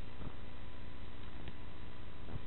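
Steady background hum and hiss, with a faint short sound about a quarter second in and a faint click about one and a half seconds in.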